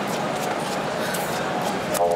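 Stadium crowd: a steady murmur of many voices with scattered handclaps.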